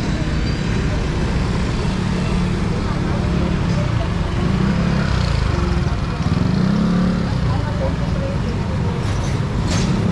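Street traffic: motorcycle and car engines running past, with swells in the engine rumble as vehicles go by, amid the indistinct voices of people on the sidewalk. A brief sharp noise near the end.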